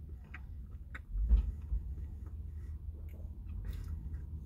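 A person chewing a mouthful of breaded chicken sandwich, with scattered small wet mouth clicks. There is a short low thump about a second in.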